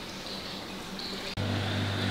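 Mains water running into a koi pond, a steady rushing hiss. About a second and a half in, it cuts off abruptly to the steady low hum of the pond pumps running.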